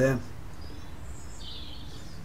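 Quiet steady low background rumble, with one brief faint high chirp about one and a half seconds in.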